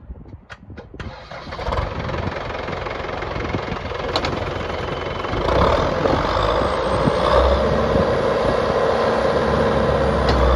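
Diesel engine of a New Holland TK100A crawler tractor starting about a second in and then running steadily, growing louder about halfway through as it picks up revs.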